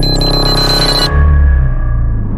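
Electronic intro music and sound effects: a held high digital beep ends a run of beeps and cuts off about halfway through, as a deep low rumble comes in.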